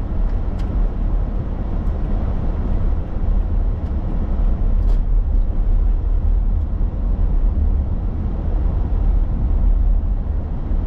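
A car driving along a town road, heard from inside the cabin: a steady low rumble of engine and tyres on the road surface. There are a couple of faint ticks, once about half a second in and again about five seconds in.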